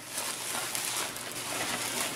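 Plastic bubble wrap rustling and crinkling steadily as hands pull it apart and push it aside.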